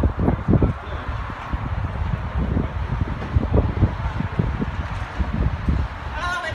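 Wind buffeting a cell phone's microphone: an irregular, gusty low rumble.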